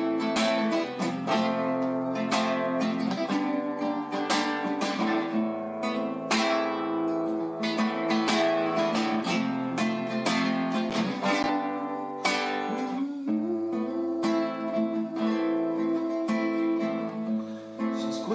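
Music: acoustic guitar strumming an instrumental passage of a song, with no singing.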